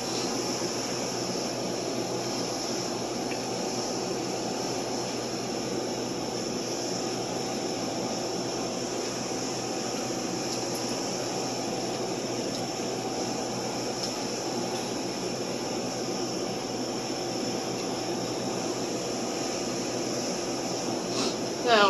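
Steady air-conditioning and fan noise with a faint low hum, even in level throughout.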